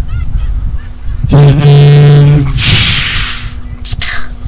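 A loud, steady honk lasting about a second, starting just over a second in, followed straight after by a brief burst of hiss.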